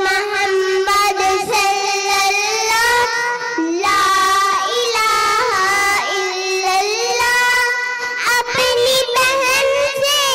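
Two young girls singing a devotional naat together into microphones, in long held notes that bend up and down, without instruments.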